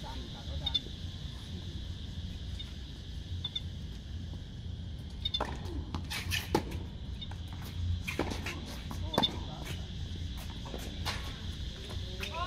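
Tennis rally on an outdoor hard court: a string of sharp ball strikes and bounces starting about five seconds in, spaced roughly half a second to a second and a half apart, over a steady low background rumble.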